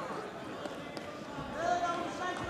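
Dull thumps of heavy bodies shifting on a wrestling mat under the noise of a large hall, with a voice calling out loudly near the end.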